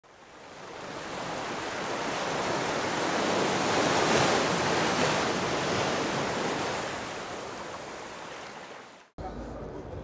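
A long rush of noise like surf or wind, the whoosh sound effect of an animated logo intro, swelling for about four seconds and then slowly fading. It cuts off abruptly just after nine seconds, giving way to the low hum of a large exhibition hall.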